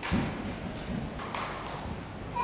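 Dull thuds of a gymnast's bare feet on a wooden balance beam and the landing mat, the loudest just after the start and a few softer ones after it.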